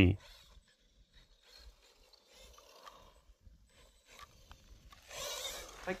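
Small 1/24-scale electric RC monster truck driving: mostly very faint, then about five seconds in a hiss of its tyres running over gravel that lasts about a second.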